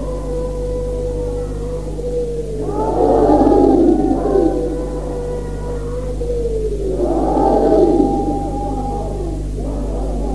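A man's voice chanting marsiya verses in long, drawn-out held notes, swelling louder twice, about three and seven seconds in. A steady low hum runs under the old tape recording.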